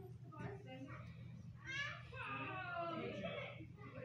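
Indistinct voices in a room, then about two seconds in a young child's high-pitched, drawn-out vocalization that falls in pitch.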